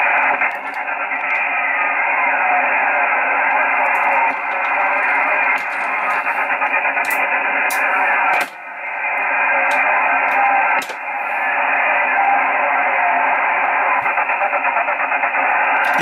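Yaesu FT-847 receiving a single-sideband satellite downlink: a steady band of radio hiss from the LO-87 linear transponder, described as quite noisy, with a weak voice faintly heard in the noise. The hiss dips briefly twice, about eight and a half and eleven seconds in.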